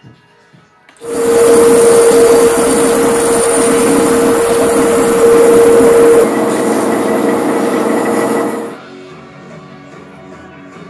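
A large bandsaw cutting a wooden plank: a loud, steady sawing noise with one held note in it. It starts about a second in, drops a little in level partway through and stops near the end, leaving background music.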